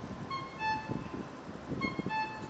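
A short two-note electronic tone, a higher note then a lower one, repeating about every second and a half over low rumbling street noise.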